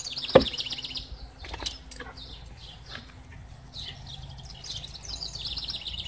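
Small songbirds singing: a fast trill of high repeated notes at the start and again near the end, with scattered short chirps between. One sharp click about half a second in.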